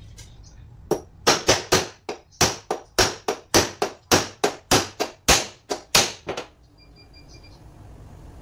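A quick series of about eighteen sharp strikes, about three a second, on a metal truck starter motor part being worked on the bench. The strikes start about a second in and stop after about five and a half seconds.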